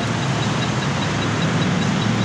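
A steady low engine hum, like a motor vehicle running at idle nearby, over a constant wash of street noise.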